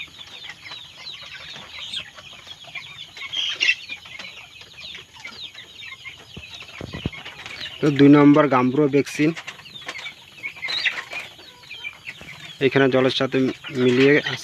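A flock of broiler chickens calling continuously, many short, high-pitched cheeps and clucks overlapping. A man's voice speaks briefly about eight seconds in and again near the end.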